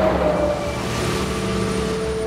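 Road traffic rushing past close by: a whoosh that swells up loudest right at the start and eases off slowly, over music holding long sustained notes.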